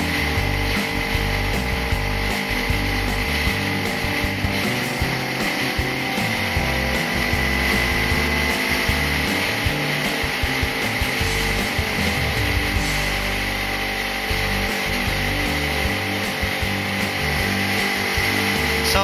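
Background music: held notes over a bass line that changes every half second or so.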